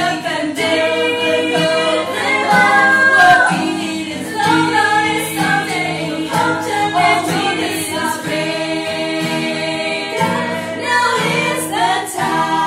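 A small group of women singing together, with acoustic guitar accompaniment.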